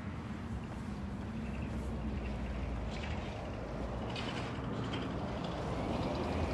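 A motor vehicle's engine runs nearby as a steady low rumble. A few brief scratchy rustles sound over it.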